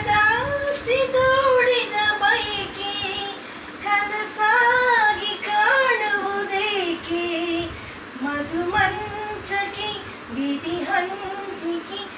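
A man singing a Kannada film song unaccompanied in a high, female-style voice, in phrases with wavering held notes and short breaks between lines.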